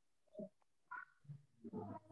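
Near silence broken by a few faint, short vocal sounds over a video-call connection. Near the end a voice begins to answer.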